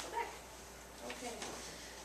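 A low, indistinct speaking voice in short snatches.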